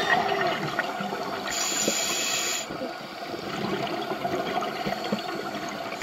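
Scuba breathing heard underwater through the camera housing: a hiss of air drawn through the regulator for about a second, then the lower bubbling of an exhale, over a constant crackle in the water.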